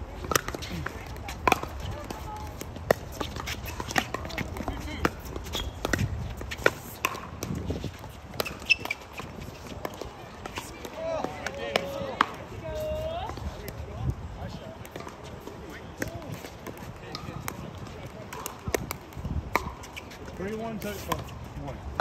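Pickleball rally: paddles striking the hard plastic ball, and the ball bouncing on the court, make a string of sharp pops about a second apart, most of them in the first half. Voices carry in the background partway through.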